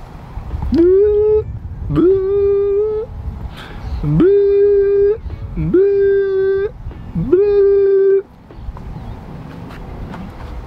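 A man's voice gives five loud, held calls. Each one slides quickly up from low into a single steady note lasting about a second, with short gaps between them.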